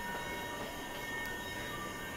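Faint background music: a held chord of several steady tones, with no beat or change in pitch.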